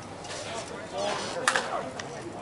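A single sharp ping of a slowpitch softball bat striking the ball, about one and a half seconds in, with a brief ring after it, over players' voices.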